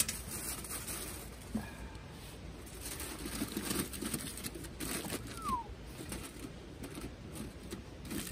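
Aluminium tin foil being crinkled and pressed by hand over the open front of a pan, a run of short crackling rustles that is densest in the middle of the stretch.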